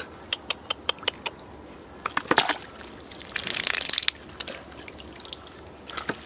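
Hands digging and scooping through wet mud, with a quick run of sharp wet clicks and smacks in the first second or so and a longer squelching, sloshing rush of mud and water near the middle.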